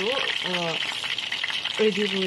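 Rohu fish pieces frying in hot oil in a pan, a steady sizzle, with the pieces being turned over with tongs.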